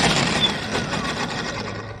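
Hart 40V brushless string trimmer run on its variable-speed trigger: the motor and spinning line give a steady whir, loudest at first and fading away over the two seconds as it winds down.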